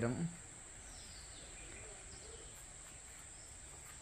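Quiet outdoor ambience: a steady, high-pitched insect drone with a few faint bird chirps. A man's voice cuts off just at the start.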